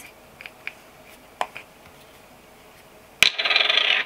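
A few faint clicks as the screw cap of a plastic body-lotion tube is twisted off, then, near the end, a sharp click and a brief clatter as the small cap is dropped onto a wooden tabletop and settles.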